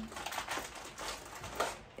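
Faint rustling and small clicks of hair and a small shell being handled close to the microphone as the shell is threaded onto a loc.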